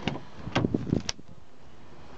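Rear door of a 2006 Saab 9-3 estate being opened from the outside handle: a cluster of clicks and a knock from the handle and latch about half a second to a second in as the door unlatches and swings open.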